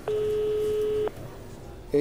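Telephone ringing tone heard through the handset while a call waits to be answered: one steady tone lasting about a second, then a pause with faint background. A man's voice starts right at the end as the call connects.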